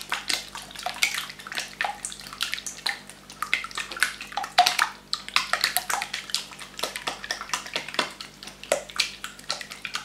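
Silicone spatula beating a liquid egg-and-cream batter in a glass bowl: steady sloshing of the liquid with many quick, irregular clicks.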